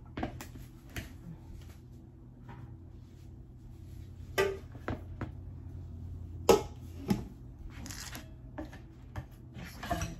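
Plates and a metal pan being handled and set down: a few separate sharp knocks and clatters, the loudest about four and six and a half seconds in, over a steady low hum.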